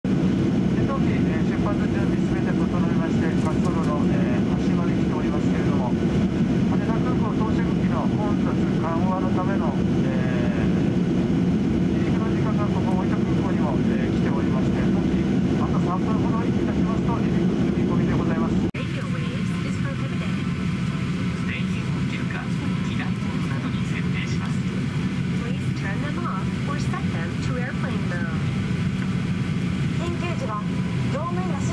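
Steady cabin hum inside a Boeing 737-800, with voices over it. About two-thirds of the way through, the hum changes abruptly to a slightly quieter one.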